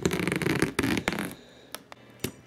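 Clear plastic wrapping crinkling and crackling as it is pulled by hand off a stretched canvas: dense and loud for the first second and a half, then only a few separate crackles.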